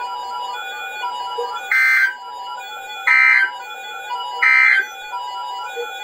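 Emergency Alert System end-of-message data bursts: three short buzzy, warbling bursts of digital tones, about a second and a half apart, marking the end of the warning broadcast.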